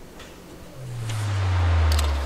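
Commercial sound design: after a brief hush, a low bass drone swells up from about a second in under a fizzing hiss, with a sharp click near the end as a soda can is cracked open.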